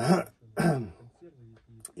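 A man clearing his throat: two short rough bursts about half a second apart, followed by a brief faint murmur.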